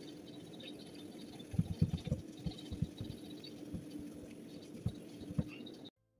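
Whiteboard being wiped clean of marker: soft, irregular rubbing strokes and light knocks, starting about a second and a half in, over a faint steady hum.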